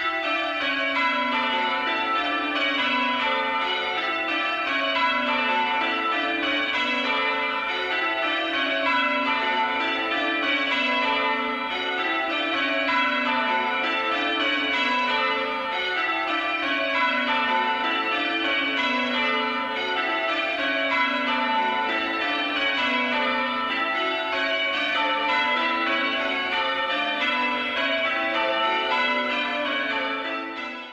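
Church tower bells rung in changes: a full peal, each sequence stepping down in pitch bell by bell and repeating over and over, loud and steady.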